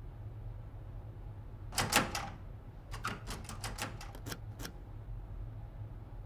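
Computer keyboard being typed on: a few louder key strikes about two seconds in, then a quick run of about nine key clicks, roughly five a second.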